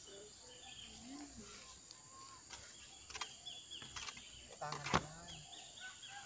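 Faint scraping of hoes and shovels turning a heap of soil, compost and cocopeat potting mix, with a couple of soft knocks from the tools about three and five seconds in. Faint voices and bird chirps sound in the background.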